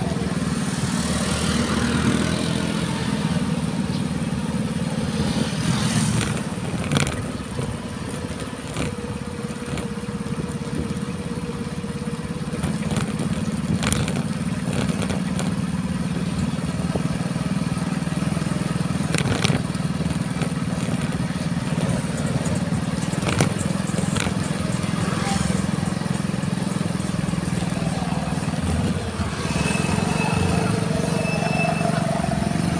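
Small motorcycle engine running steadily while riding, a low hum that eases off briefly about a third of the way in, with wind noise and a few sharp knocks on the microphone.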